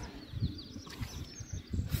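A bird singing faintly: a quick run of short high notes, then a single high note near the end.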